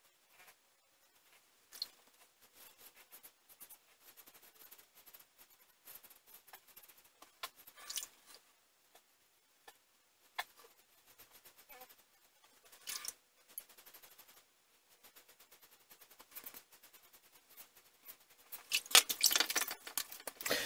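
Vintage Gillette Flare Tip double-edge safety razor scraping through lathered stubble on the jaw and neck in short strokes, against the grain: a faint, scratchy crackle of separate strokes. Near the end there is a louder run of hands rubbing over the face.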